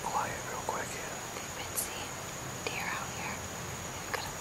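A woman whispering, with a faint steady high-pitched whine behind it.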